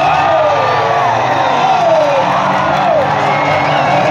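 Crowd of spectators cheering, whooping and yelling, with long rising and falling shouts.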